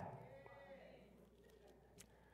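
Near silence: faint room tone, with the tail of a man's voice fading away in the first half second.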